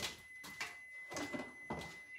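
Faint knocks and clatter as the parts of a plastic food chopper are put into a sink of water, the sharpest knock right at the start, over a thin steady high tone.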